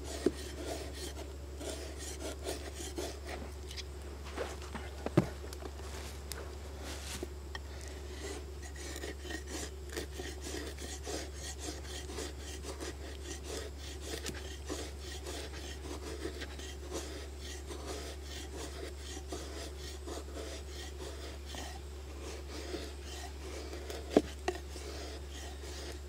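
Carbon-steel blade of a KA-BAR Pestilence Chopper carving shavings from alligator juniper: a continuous run of short scraping strokes of steel on wood. Two sharper knocks stand out, one about five seconds in and one near the end.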